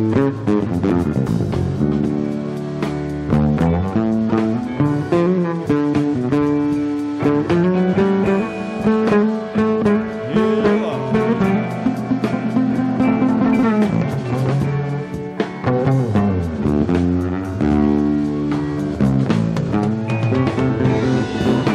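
Live solo on a Fender electric bass: a moving line of low plucked notes, with drums hitting behind it.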